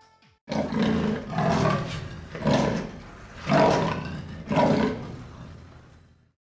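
A big cat roaring: five loud roars about a second apart.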